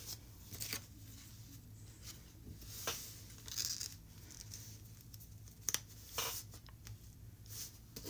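Paper pattern pieces rustling and sliding as they are handled and shuffled into place on folded fabric: light scattered rustles, with a pair of sharp ticks about two-thirds of the way in.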